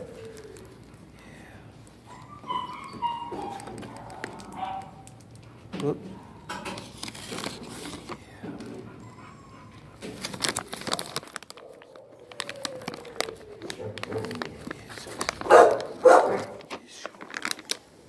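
A dog whining and moaning: several short wavering whines a few seconds in, a long falling moan past the middle, and two louder cries near the end. Scattered clicks sound throughout.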